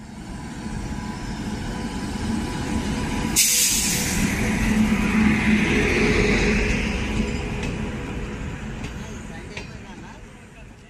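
Passenger train running past a station platform with a steady rumble of wheels and coaches. A sudden burst of air hiss comes about three seconds in and dies away over about a second.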